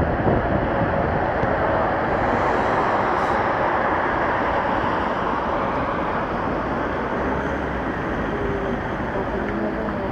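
Tram running, heard from inside the car: a steady rumble and roar of the car in motion.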